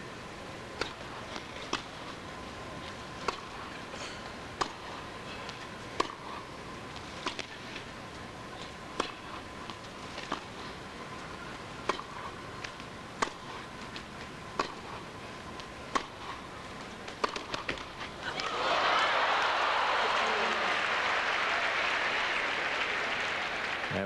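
Tennis ball struck by rackets and bouncing on the court in a long rally, sharp hits coming every second or so for about 17 seconds. The point ends and the arena crowd breaks into loud applause about 18 seconds in, running to the end.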